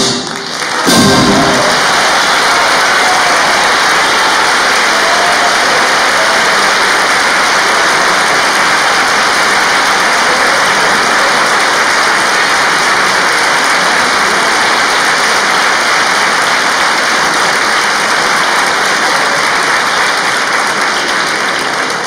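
A brass and wind band's last short chord about a second in, then steady audience applause.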